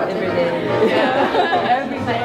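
Many people chatting at once, their voices overlapping in a large room.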